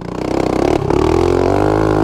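Mini-moto (small pit/dirt bike) engine accelerating as the bike pulls away, its pitch climbing over the first second and then holding steady.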